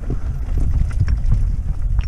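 Wind rumbling over the microphone of a mountain bike descending a rough stone path, with the bike rattling and its tyres knocking irregularly over rocks and slabs.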